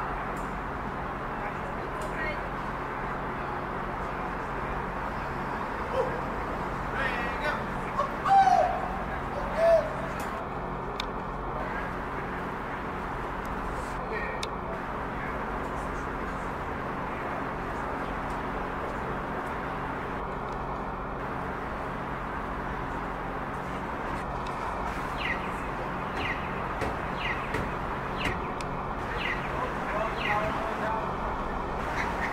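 Steady outdoor background hum with small birds chirping now and then, and two short, louder sounds about eight and ten seconds in.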